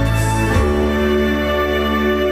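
Instrumental backing music for a love song, a karaoke-style track playing sustained chords that change about half a second in, with no singing over it.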